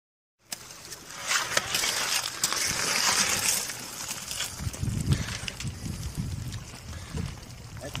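Shallow water splashing and sloshing for the first few seconds as a hand disturbs a calm pool, followed by indistinct low voices.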